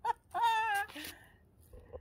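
A man's short, high-pitched vocal exclamation, a single held note with a wavering pitch lasting about half a second, following his laughter.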